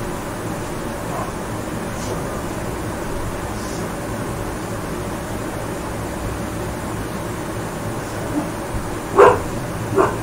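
Steady background hum, then a pet dog barking near the end: a small yelp, then one loud bark and a second one right after.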